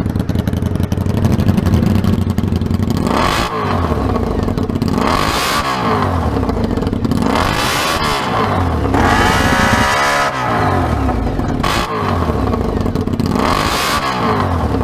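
Honda VFR400R NC30's 400 cc V4 engine running through a homemade slash-cut exhaust, super loud. Its steady idle is broken by about six throttle blips, each rising and then falling in pitch.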